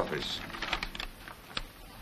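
Stiff writing paper crackling and rustling as a letter is drawn from its envelope and unfolded: a scatter of short, sharp crinkles over about the first second and a half, then fading.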